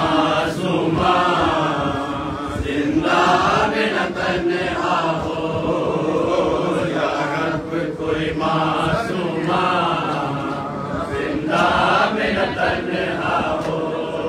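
Urdu noha chanted without instruments, a boy's voice at the microphone with men's voices joining in chorus, the sung lines running continuously.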